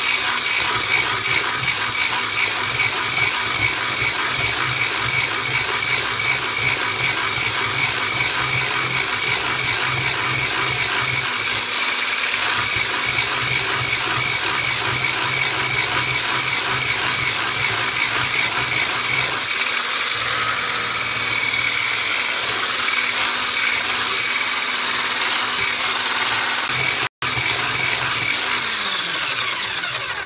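Electric hand mixer's motor running steadily with a whine, its wire whisk beaters whipping eggs into a thick foam in a bowl. There is a brief break near the end, and then the motor winds down.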